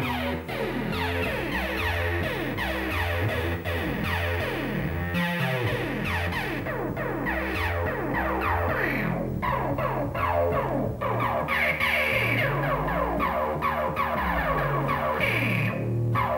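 Soulsby Atmegatron 8-bit synthesizer, running its Odytron firmware, playing a repeating sequenced pattern of low notes with sweeping higher tones, its sound reshaped as its knobs are turned by hand.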